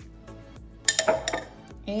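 A metal fork clinking several times in quick succession against dishware about a second in, over quiet background music.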